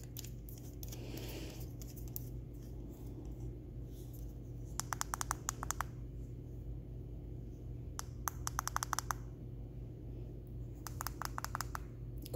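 Rapid clicking of a small vape battery's push button, pressed in three quick runs of several clicks each, over a low steady hum.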